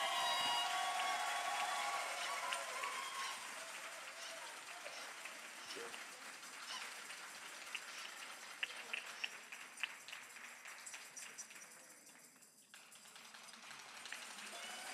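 Audience applauding, loudest at the start and dying away over about ten seconds, with a few scattered claps near the end.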